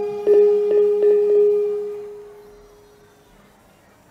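Trompong, a row of bronze kettle gongs, struck four times in quick succession on the same note. Its ringing tone fades away over the next couple of seconds.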